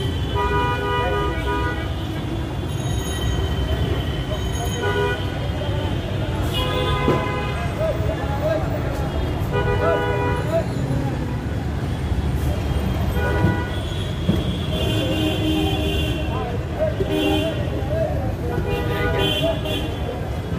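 Vehicle horns honking again and again in busy street traffic, short toots and longer blasts every second or few, over a steady traffic rumble.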